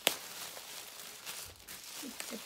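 Bubble-wrap packaging rustling as it is handled and unwrapped by hand, with a sharp click at the very start.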